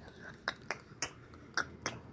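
About five short, sharp clicks at uneven intervals, fairly quiet, with a faint background between them.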